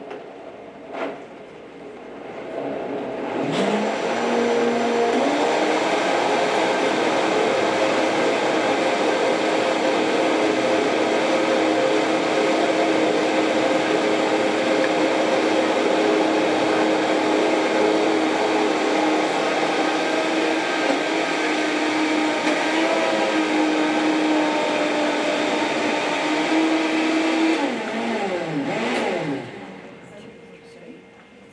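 Countertop blender blending a quart of liquid mixture. After two clicks, the motor starts a few seconds in, rises in pitch as it comes up to speed, holds a steady whine for over twenty seconds, then winds down with a falling pitch near the end.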